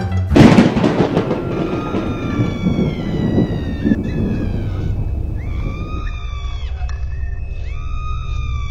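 A loud thunderclap sound effect just after the start, rolling off into a long rumble, followed by long gliding howls that rise and fall, with a low steady musical drone coming in about six seconds in.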